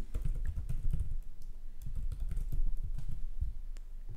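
Typing on a computer keyboard: a run of short, irregularly spaced key clicks with dull low thumps.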